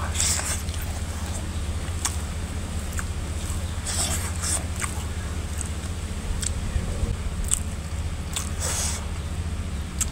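Close-up chewing of a mouthful of chicken curry and rice eaten by hand, with wet lip smacks and mouth clicks now and then, clustered about four seconds in and again near the end. A steady low hum runs underneath.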